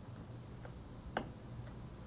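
Phillips screwdriver backing a small screw out of a MacBook's lower case: one sharp click about a second in, with a couple of fainter ticks either side, as the screw comes free.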